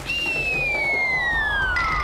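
A comedy whistle sound effect: one long, smooth falling whistle tone that slides steadily downward in pitch.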